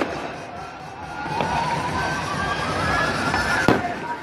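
Aerial fireworks shells bursting: a softer crack about a second and a half in and a loud bang near the end, over a continuous din of the display, with a wavering high tone underneath.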